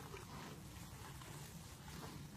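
Horses eating hay: faint chewing and crunching close by, over a steady low rumble.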